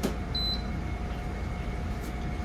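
A click, then one short high electronic beep from a GE dehumidifier's control panel about half a second in as it is plugged in, over a steady low hum.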